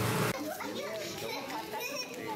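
Children playing, their high voices and calls faint and scattered, starting after a cut about a third of a second in.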